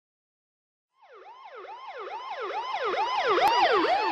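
Siren sample in the intro of a hip-hop track: a fast yelp that rises and falls about three times a second, fading in after a second of silence, with a short click about three and a half seconds in.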